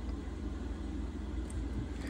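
Steady low background rumble with a faint hiss, and a faint tick about one and a half seconds in.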